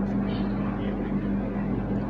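A steady low electrical-sounding hum over a faint even background noise, with no speech.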